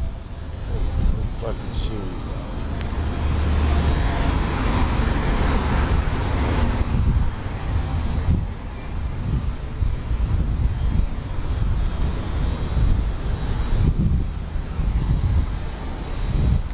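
A vehicle passing, its noise swelling a few seconds in and fading, over a constant low rumble of wind on the microphone.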